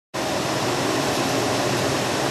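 A Kern CO2 laser cutting machine running: a steady rush of air with a faint low hum, from its blowers or air handling, starting just after the opening.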